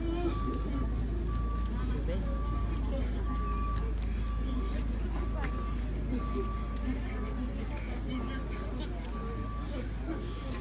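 A vehicle's reversing alarm beeping about once a second over the low rumble of an engine, with people talking.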